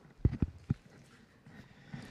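Footsteps of a man in dress shoes walking across a stage: a few dull thuds in the first second, then quiet.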